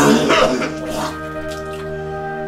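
A man retching and vomiting a stream of Sprite and banana onto a tabletop, with a loud gush and splash that dies away within the first second. Background music continues throughout.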